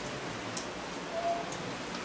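Steady background hiss of a large room during a pause in speech, with a few faint clicks.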